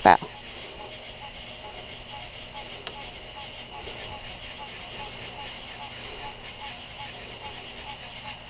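Night insect chorus: crickets and other insects making a steady high-pitched drone, with a faint lower call repeating a few times a second in the background. A single small click about three seconds in.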